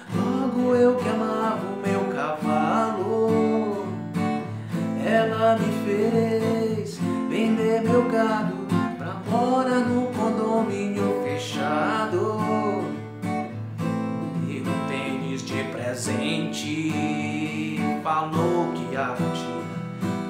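Strummed chords on a Strinberg acoustic guitar, with a man singing a Brazilian pop song in Portuguese over them.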